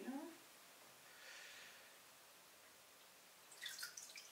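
Faint water sloshing as a papermaking mould is gently shaken under the surface of a tub of paper pulp, then a brief splash and trickle near the end as the mould starts to come up out of the water.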